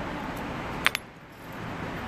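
Two sharp clicks in quick succession about a second in, over steady background noise.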